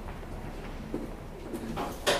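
Lyon funicular car running into its underground station: a steady low rumble, with a faint low hum coming in about halfway through.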